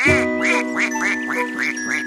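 Cartoon duck quacking sound effect, a quick run of short quacks at about five a second, over a held chord of children's song music.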